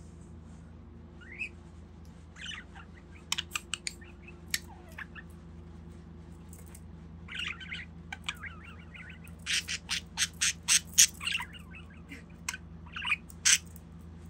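Budgie chirping and giving short squawks, with sharp clicks in between; the loudest part is a quick run of short squawks about ten seconds in.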